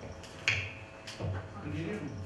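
A few short clicks and knocks, the sharpest about half a second in, with low voices murmuring in the second half.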